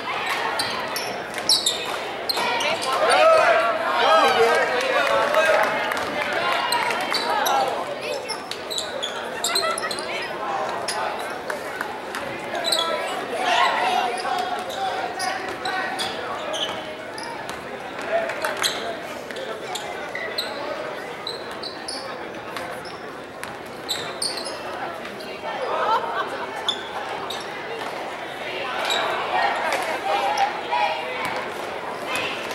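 Basketball game sounds in a gymnasium: a basketball dribbled on the hardwood floor and sneakers squeaking, with indistinct shouts from players and spectators echoing in the hall, the voices rising in a few short spells.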